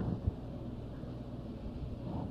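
Steady low hum with a light hiss: the background noise of an old tape recording, heard in a pause between speech, with a short low thump just after the start.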